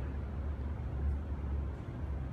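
A steady low rumble of background noise with no distinct events.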